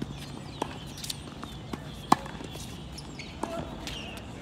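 Tennis rally on a hard court: sharp pops of a tennis ball struck by rackets and bouncing on the court, about five in all, the loudest about halfway through.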